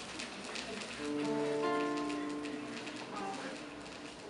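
A vocal group sings a sustained chord, with voices entering about a second in and holding steady notes for a second or two before fading out. Light clicks and taps are heard before the chord.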